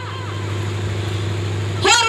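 A woman's amplified singing voice through a microphone and loudspeakers, breaking off between phrases; in the gap a steady low hum holds, and her voice comes back in near the end.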